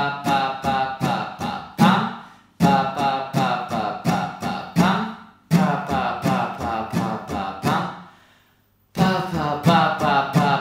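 Acoustic guitar with a capo strummed in a repeating pattern: one ringing down stroke, then a run of six quick alternating down and up strokes, played about three times with a brief stop near the end.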